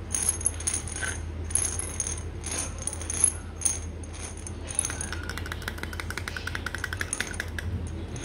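Fingernails tapping on the gold metal screw cap and amber glass of a vitamin bottle: scattered light, sharp taps, then about five seconds in a quick, even run of ticks lasting nearly three seconds.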